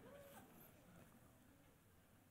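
A very faint snow leopard yowl, a short wavering call in the first half second that fades out. It is a female's mating call to a male.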